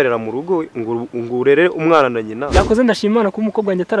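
A man talking, with one brief low thud about two and a half seconds in.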